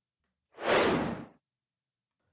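A single whoosh sound effect: a short rush of noise, a little under a second long, that swells and then fades, marking the change from one podcast segment to the next.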